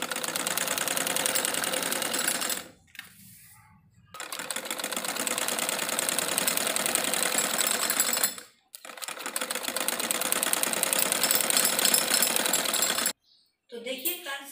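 Domestic sewing machine stitching a seam through cotton fabric, the needle running fast in three stretches with a pause about three seconds in and a brief stop about eight and a half seconds in, stopping shortly before the end.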